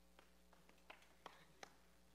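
Near silence: faint room tone with a steady low hum and a handful of small scattered taps, the footsteps of people walking forward.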